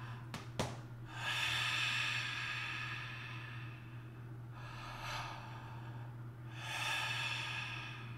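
A man breathing deeply through a wide-open mouth into his diaphragm, in long, loud, breathy breaths: a long one a second in, a shorter one around the middle, and another near the end.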